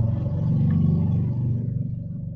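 A low, steady engine rumble that swells and then fades over a few seconds, like a motor vehicle passing.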